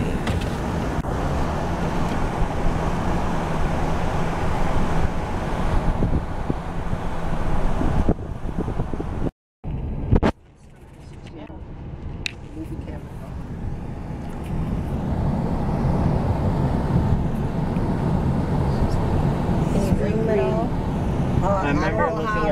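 Road noise inside a moving car: a steady low rumble of tyres and engine. It breaks off for an instant about nine seconds in, returns much quieter, and builds back up over the next few seconds. Voices begin near the end.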